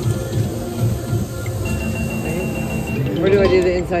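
Casino-floor background of electronic slot-machine music and tones over a steady low hum, with a thin high electronic tone held for about a second in the middle. A voice comes in near the end.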